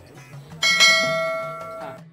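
A bell sound effect struck once about half a second in, ringing with several steady tones and fading over about a second before it cuts off.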